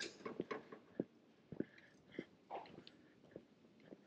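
Faint footsteps on a paved street: short soft scuffs at a walking pace, roughly one every half-second to second.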